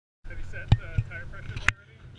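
Handling noise on a car-mounted action camera: three sharp knocks, the loudest about three-quarters of a second in and near the end, with voices talking underneath.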